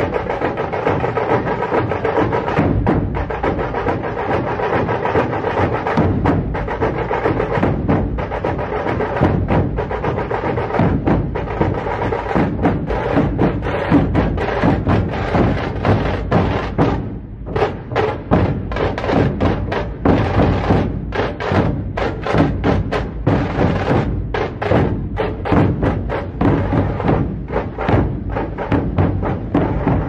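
Music with a steady percussion beat, briefly dropping away about two-thirds of the way through.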